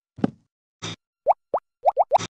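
Choppy string of tiny spliced cartoon sound fragments with silent gaps between them: a short blip and a brief burst, then a quick run of four short plops, each rising in pitch, in the second half.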